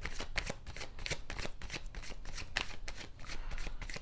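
A deck of tarot cards being shuffled by hand: a continuous, irregular run of quick papery flicks and slaps.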